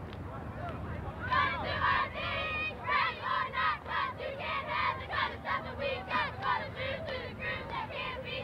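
A group of high voices chanting a rhythmic cheer in short, regular shouts, about three a second, starting about a second in, over the background murmur of a crowd in the stands.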